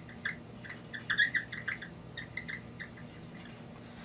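Dry-erase marker squeaking on a whiteboard while arrows are drawn: a run of short, high squeaks, loudest about a second in.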